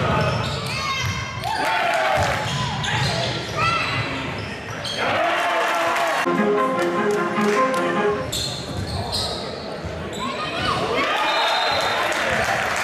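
Basketball game in a reverberant sports hall: sneakers squeaking on the court floor in short chirps, the ball bouncing, and players and spectators calling out.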